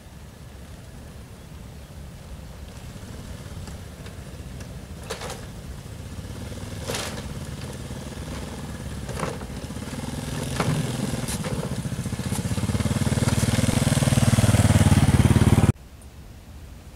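A small motorcycle's engine running as it rides toward and onto a loose wooden plank bridge, getting steadily louder as it nears. Several sharp clacks of the boards knocking under its wheels come in the middle. The sound cuts off abruptly just before the end.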